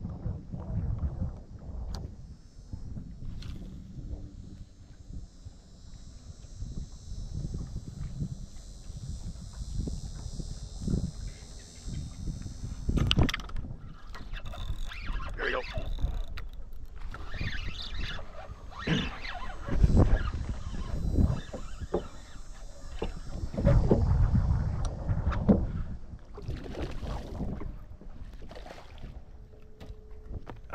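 A hooked snook being fought and brought aboard a small boat: water splashing and knocks against the hull and deck over a steady high hiss. The heaviest splashing comes about two-thirds of the way through.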